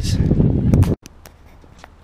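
Loud low outdoor rumble with a few knocks, which cuts off abruptly about a second in. After that comes much quieter street ambience with scattered clicks, such as footsteps on cobbles.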